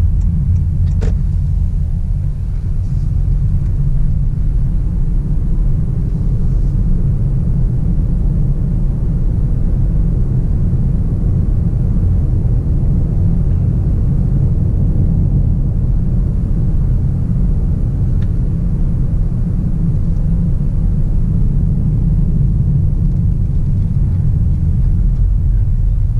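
Steady low road and tyre rumble inside a Honda Clarity's cabin as it drives along in electric (EV) mode, with no engine note.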